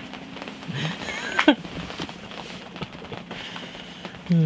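Rain falling steadily on the tent roof, an even patter.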